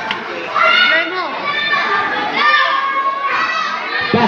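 Children in a crowd of spectators shouting and chattering, high-pitched voices calling out in several bursts.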